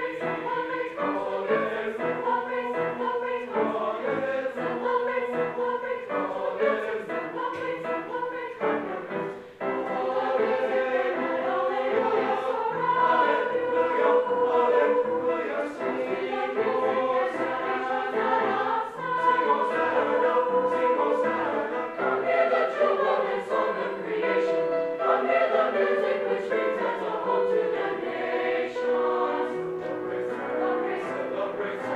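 Mixed choir of teenage voices singing a choral piece with piano accompaniment. The sound breaks off briefly about nine and a half seconds in, then the singing comes back louder and fuller.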